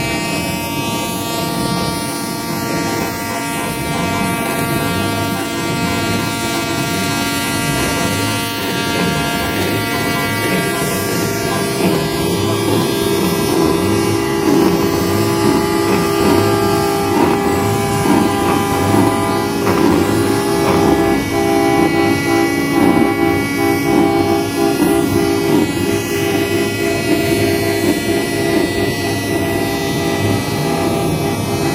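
Several truck horns held down together for the whole stretch, sounding as one long, loud, unchanging chord, with more horn tones joining in about ten seconds in.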